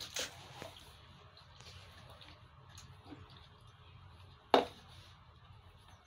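Water lapping and small splashes in a plastic baby basin as a cup is dipped and moved through it, with one sharp hit, the loudest sound, about four and a half seconds in.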